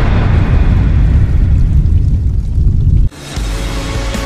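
A loud, bass-heavy explosion-like rumble sound effect, its hiss fading, cuts off abruptly about three seconds in. Music with held notes follows.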